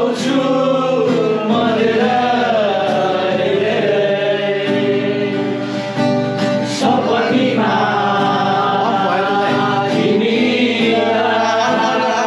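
A group of male voices singing a song together to an acoustic guitar.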